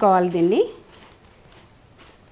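A woman's voice for about half a second, then faint, irregular gritty rustling of fingers mixing semolina and sugar on a plate for rava laddu.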